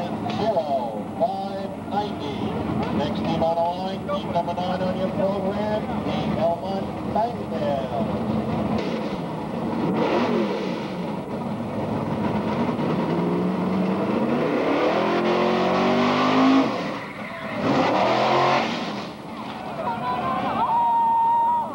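A pickup-based fire drill team truck's engine running hard down the track, its pitch rising steadily for a few seconds in the second half as it accelerates, over a crowd shouting and cheering.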